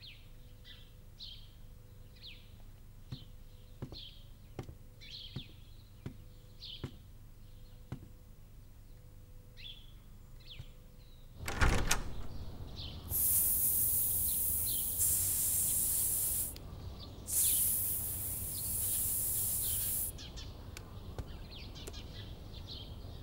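A caged bird chirping softly in short calls, then about halfway through a window or balcony door is swung open with a sharp knock, letting in louder outdoor sound. After that a loud, steady high hiss comes twice, each about three seconds long.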